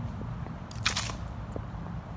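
Footsteps walking on a brick path, faint light steps over a steady low rumble, with one short sharp scrape about a second in that is the loudest sound.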